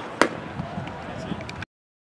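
A pitched baseball popping into a catcher's leather mitt once, a single sharp crack that is the loudest thing here, over faint background voices. All sound cuts off suddenly about a second and a half in.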